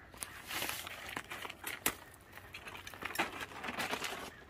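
Plastic tarp rustling and crinkling as it is handled and pulled over an awning pole, with one sharp crack near the middle.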